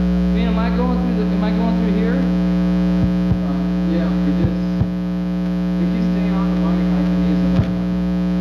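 Loud, steady electrical mains hum from a live band's amplified rig, with faint talk underneath and a few sharp clicks, the strongest one near the end.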